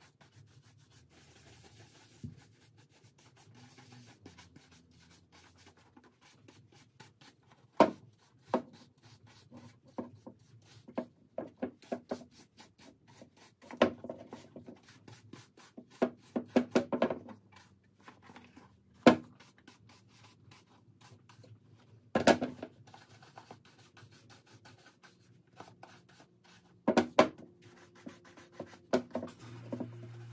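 Horsehair brush buffing a freshly conditioned leather boot to even out the cream and raise a shine: soft rubbing broken by irregular bursts of quick brush strokes, a few sharp strokes louder than the rest.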